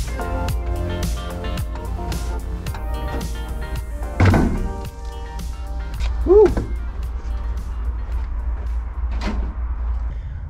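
Background music plays throughout. About four seconds in there is a single loud thunk as the rear sliding window of a Nissan D21 pickup comes free of its soft rubber seal.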